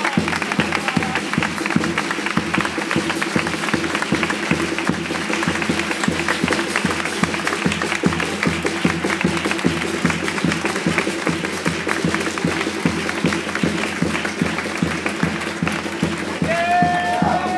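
Steady applause and hand-clapping over music with a held low chord.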